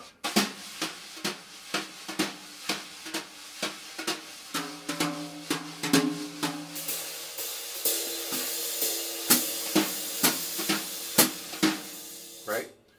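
Jazz brushes playing a swing pattern on a snare drum: evenly spaced accents a little over two a second over a continuous sweeping hiss that grows brighter in the second half, with the drum heads ringing.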